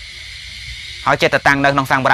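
Steady hiss of the recording, then a Buddhist monk preaching in Khmer in a man's voice, starting about a second in.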